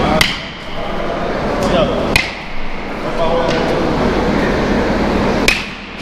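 Louisville Slugger Select PWR BBCOR bat hitting pitched baseballs: three sharp hits, just after the start, about two seconds in, and near the end.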